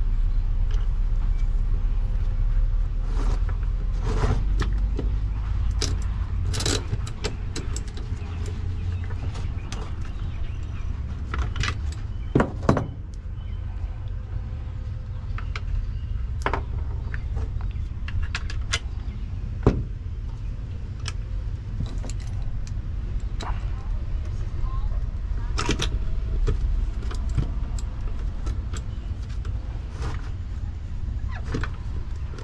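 Scattered metallic clicks and knocks as the lug hardware and screws of a main circuit breaker are handled and fitted, with two sharper knocks a little before halfway and about two-thirds through. A steady low rumble runs underneath.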